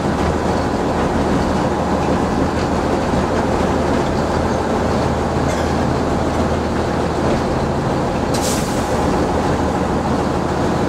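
Diesel shunting locomotive heard from inside its cab while running along the line: a steady engine drone with rail and wheel noise. A brief high-pitched burst cuts in about eight seconds in.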